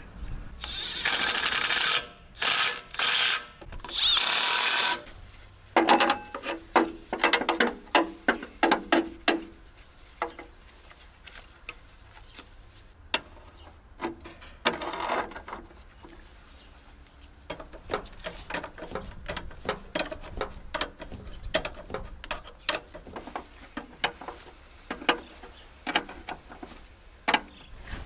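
Radiator mounting bolts being tightened: three loud bursts from a power tool in the first five seconds, then many rapid clicks and metal knocks of wrench work, with another short burst about halfway through.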